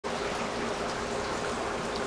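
Heavy rain pouring steadily, with water streaming and trickling.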